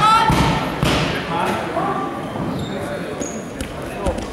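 Wrestling on a mat: a few dull thuds of bodies and hands on the mat in the first second, among shouted voices of coaches and onlookers.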